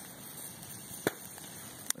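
Wood campfire burning: a steady low hiss with two sharp crackling pops, one about a second in and one just before the end.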